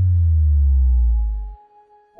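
Electronic power-down sound effect: a loud, deep hum that slides slowly downward in pitch and cuts off about a second and a half in, marking a computer system shutting down for a reboot.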